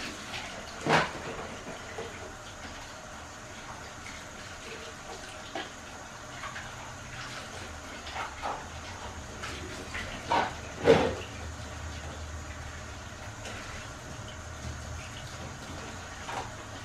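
Dishes being washed by hand at a kitchen sink: water running with scattered knocks and clatters of dishes and utensils, the loudest a pair of clatters a little past the middle.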